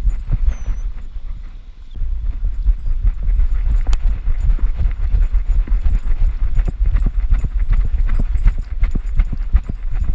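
Quick, rhythmic thumping and scuffing picked up by a camera strapped to a running dog's back: each stride on dry dirt and leaves jolts the mount, over a heavy low rumble of wind and handling noise. The beat eases briefly about a second in, then picks up again.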